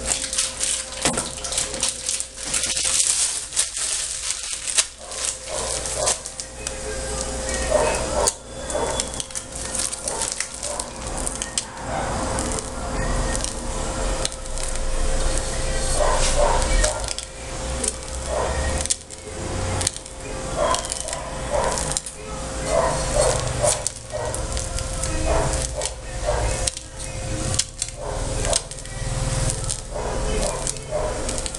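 Handling sounds of a plastic bowl and piping bag of whipped cream while grass is piped onto a cake: scattered knocks, clicks and rustles over a steady hum. Short pitched sounds come now and then in the background.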